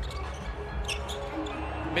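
Basketball being dribbled on a hardwood court, with a short high squeak of a sneaker about a second in, over faint background music.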